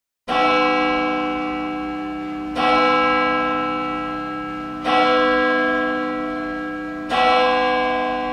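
A church bell tolling four times, about every two and a quarter seconds, each stroke ringing on and fading slowly before the next.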